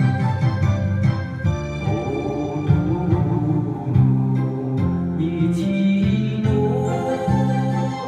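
Backing music for a Japanese song, led by a sustained organ-like keyboard melody over a steady bass line.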